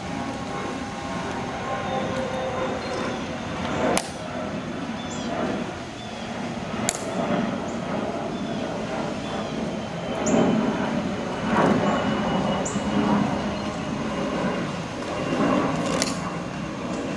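Steady outdoor background rumble with a few sharp clicks, the loudest about four seconds and seven seconds in.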